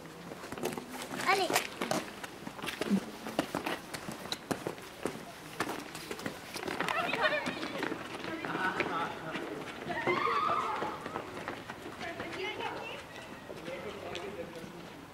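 Footsteps clicking on a paved street, quick and many in the first few seconds, with indistinct voices of children and an adult talking on and off.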